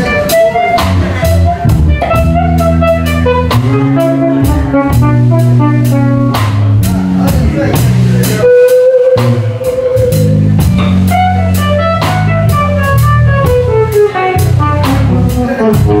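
Live blues-rock band playing a slow blues. A lead electric guitar plays over drums and bass, holding one long bent note about halfway through and running downward near the end.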